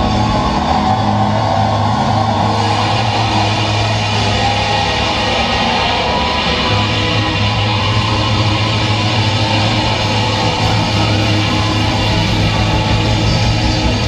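Live indie rock band playing a song at full volume, loud and steady throughout, with a sustained low bass note under the guitars.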